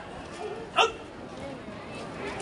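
A single short, loud shouted drill command about a second in, as the marching troop turns in formation, with faint background voices around it.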